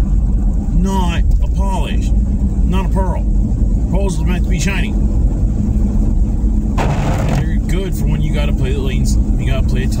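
Steady low rumble of a car on the road, heard from inside the cabin, with a man talking over it. A short hiss comes about seven seconds in.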